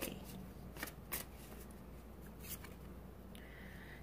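A deck of tarot cards being shuffled by hand, faintly: soft sliding of the cards with a few scattered light clicks.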